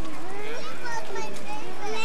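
Children's voices chattering and calling out together, high and overlapping, with one rising shout near the end.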